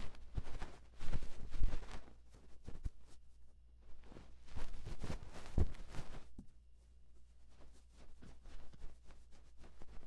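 Cotton swab rubbing and scratching on the silicone ear of a 3Dio binaural microphone, as in ASMR ear cleaning: a run of irregular soft crackles and scrapes, densest in the first two seconds and again around five to six seconds in. A faint low hum runs underneath.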